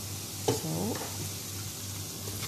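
Sliced onions sizzling as they fry in a wok, stirred with a metal spoon that scrapes and knocks against the pan, with one sharp knock about half a second in.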